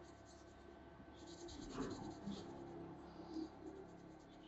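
Fingers rubbing and scratching through thick, oiled hair close to the scalp as it is parted strand by strand, a soft faint scratching that grows busier from about a second in.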